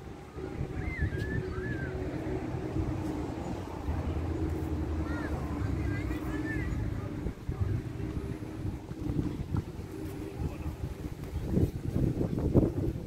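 Wind buffeting a handheld camera's microphone, a steady low rumble, with faint distant voices wavering over it.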